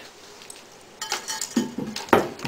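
Ceramic toilet cistern lid being lifted off the tank: a few short clinks and scrapes of ceramic on ceramic, starting about a second in.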